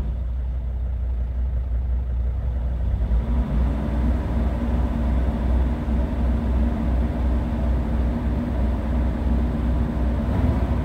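Mercedes Sprinter van engine, warm, idling, then brought up by the throttle about three seconds in and held steady at a raised speed of around 2000 rpm.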